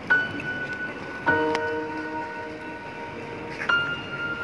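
Bells struck one after another, three strikes of different pitches, each note ringing on for a second or more; the first, highest strike is the loudest.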